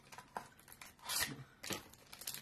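A knife cutting into a paper-wrapped bar: a few faint scrapes and crinkles, with a longer scratchy cut about a second in.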